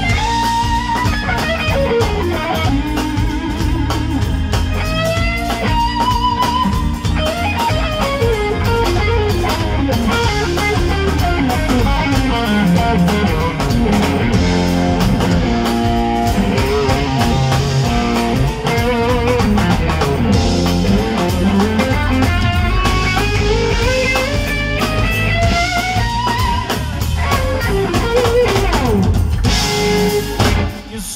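Live blues-rock band playing an instrumental passage: an electric guitar leads with bending, sliding notes over drums and bass.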